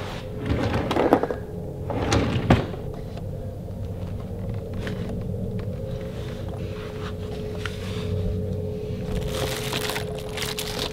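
Rustling and handling noises with a sharp knock about two and a half seconds in, over a steady low drone.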